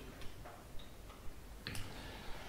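Faint, scattered small clicks, with a short, sharper noise near the end.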